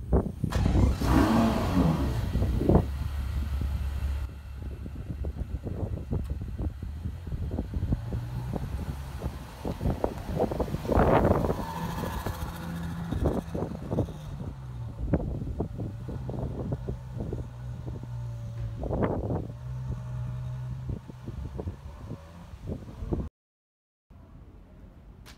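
Ferrari FF's V12 engine starting with a loud flare, then settling to a steady idle. It is blipped up briefly twice, near the middle and again later, before the sound cuts off abruptly.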